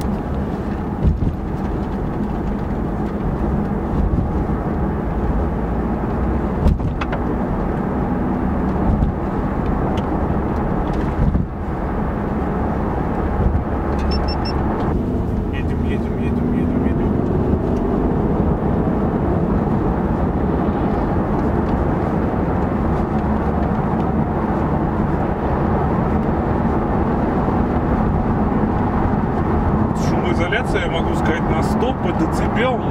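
Steady road and tyre noise inside the cabin of an Infiniti Q50 cruising on a highway on non-studded friction winter tyres, a low, even rumble with a faint rising tone from the car about halfway through.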